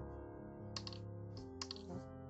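Metal double-pointed knitting needles clicking against each other a few times in the second half as stitches are worked, over background music with held notes.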